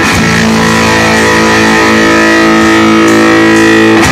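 Live rock band playing, loud, with an electric guitar holding a sustained chord.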